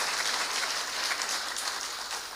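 Audience applauding, the clapping slowly dying down.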